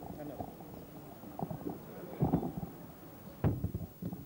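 Low murmur of voices in a small room, with two sharp knocks or thumps about two and three and a half seconds in, as people move about close to the microphone.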